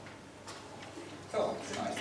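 A few faint clicks, then a person's voice starts about a second and a half in, talking quietly in a lecture hall.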